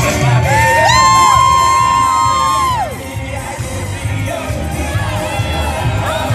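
Parade music with a steady bass beat over a crowd cheering and whooping. One long high voice is held for about two seconds near the start and falls away at its end, and shorter calls follow later.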